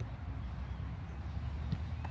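Steady low outdoor rumble with a single short thud of a football near the end.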